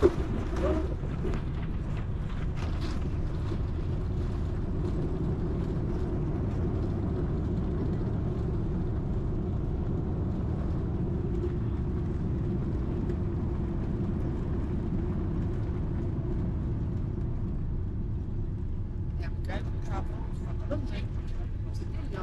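Steady low drone inside a jet airliner's cabin on the ground just after landing, the engines at idle and the cabin air running, with a steady hum. A sharp knock at the very start.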